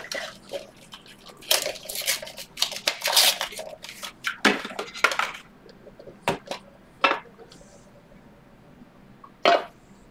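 Clear acrylic card case being handled and opened, with a dense run of plastic clicks and rustling for about five seconds, then a few separate sharp clicks.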